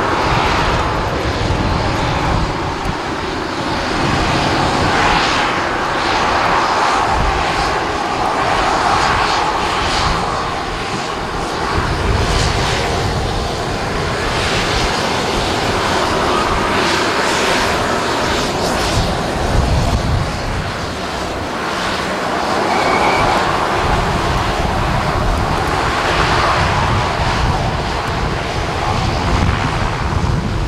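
Short 360's twin PT6A turboprop engines running as the aircraft moves along the runway, a steady propeller and turbine drone that swells and fades every few seconds.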